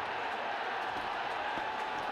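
Football stadium crowd cheering steadily just after a goal, an even wash of noise with no single voice standing out.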